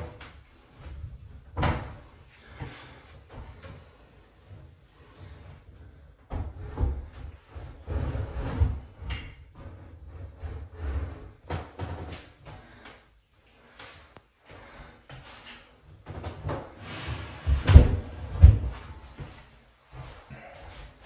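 A heavy double-sink vanity top being lowered and set down onto a wooden vanity cabinet: scattered knocks, bumps and scrapes, with two loud thumps close together near the end.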